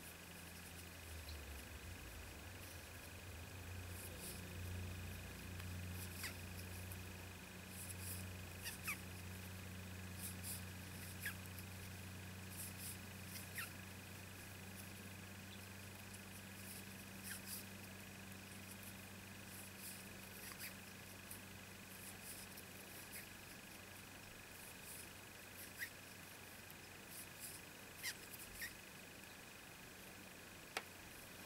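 Faint room tone: a steady low electrical hum and a thin high whine, with scattered small clicks and rustles from a crochet hook and fine thread being worked by hand. A few clicks are sharper near the end.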